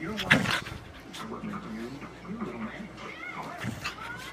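Shetland sheepdog growling and barking as it goes for a hand, with a loud burst of scuffling just after the start.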